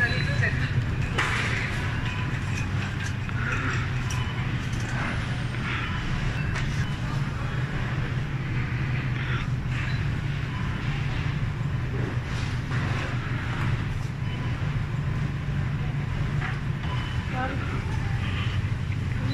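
Supermarket ambience: a steady low rumble, with faint background voices and occasional small clatters.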